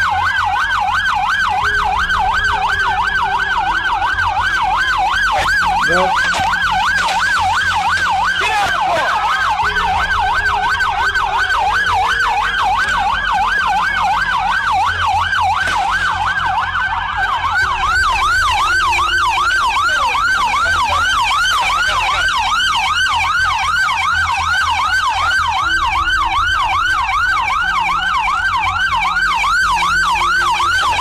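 Police car siren on a rapid yelp, its pitch sweeping up and down several times a second without a break.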